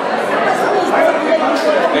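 Many people talking at once in a large, reverberant hall: steady crowd chatter.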